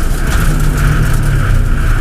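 Subaru Impreza rally car's flat-four engine running hard at speed on a gravel stage, a steady engine note over a continuous noise of tyres on gravel and rushing air.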